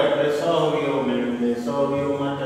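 A man's voice speaking with long, held vowels: the teacher explaining at the chalkboard.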